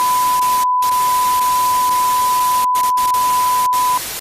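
TV test-pattern 'no signal' sound effect: a steady one-pitch test beep over loud static hiss. Both drop out briefly a few times, the longest about two-thirds of a second in.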